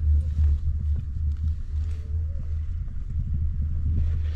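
Steady low rumble while riding a Doppelmayr six-seat detachable chairlift between towers.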